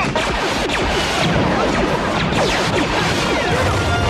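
Film soundtrack of a battle scene: orchestral score mixed with crashes, whooshes and hits from the sound effects.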